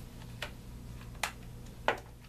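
Three sharp plastic clicks from wireless over-ear headphones being handled and adjusted, the last one near the end the loudest, over a steady low hum.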